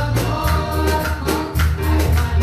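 Church worship team singing a gospel praise song into microphones, with keyboard and band accompaniment and a steady beat.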